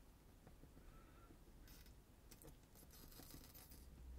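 Near silence, with a few faint ticks and brief scrapes from a soldering iron tip being drawn across the solder joints of an LCD's row of pins while the display is eased off the circuit board; the pins are sliding and creaking in the melting lead-free solder.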